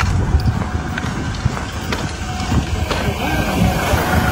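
Low, uneven outdoor rumble with a few faint clicks.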